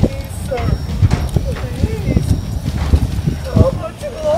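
Walking-robot sound effect: heavy footstep knocks about twice a second, with short wavering voice-like tones over them.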